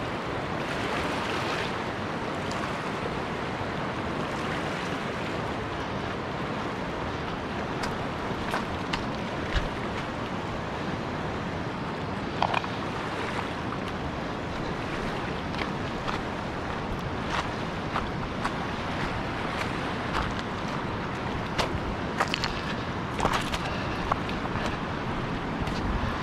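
Steady rushing of a fast-flowing river over a stony bed, with a few brief sharp clicks scattered through.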